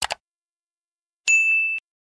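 Two quick mouse-click sound effects, then a bell-like ding about a second later that rings on one steady tone for half a second and cuts off suddenly: the click-and-bell effects of a subscribe-button animation.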